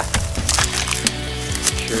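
Dry marsh reed stalks crackling and snapping in a quick run of sharp cracks as someone bends and works among them, over steady background music.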